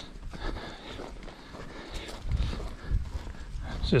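Footsteps and low thumps of a man walking while dragging fence wire, heard through a body-worn camera, with a few heavier thumps from about two seconds in.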